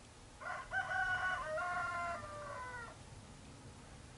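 A rooster crowing once: a single crow of about two and a half seconds in several joined notes, dropping in pitch at the end.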